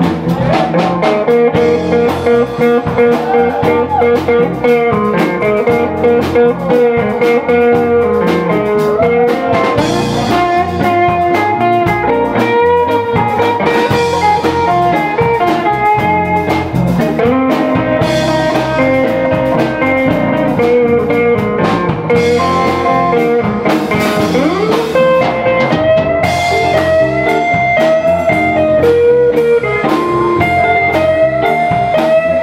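Live blues band playing an instrumental passage, with electric guitars and a drum kit, continuous and loud.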